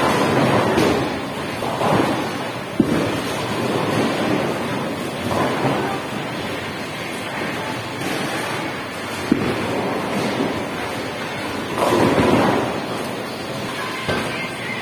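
Bowling alley din: bowling balls rumbling down the lanes and pins crashing, with louder crashes near the start, about two seconds in and around twelve seconds in, and a couple of sharp knocks.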